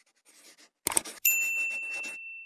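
Subscribe-button animation sound effect: a couple of sharp mouse clicks, then a single bright bell ding that rings on and fades away.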